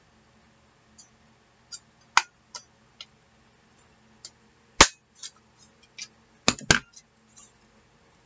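Handheld plastic scallop paper punch snapping through cardstock: several sharp clicks a second or two apart, the loudest about five seconds in and a close pair near the end, with lighter ticks between.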